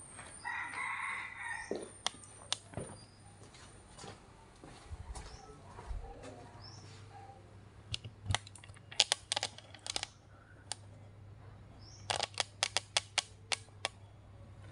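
A rooster crows once early on, one call of about a second and a half that drops away at the end. Later come two runs of sharp clicks and knocks, the loudest sounds here, over a faint steady low hum.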